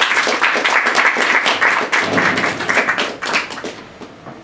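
Small audience applauding: a dense patter of hand claps that thins out and fades near the end.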